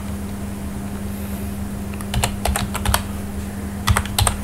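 Computer keyboard keystrokes over a steady low hum: little typing for the first couple of seconds, then a quick run of key clicks in the second half.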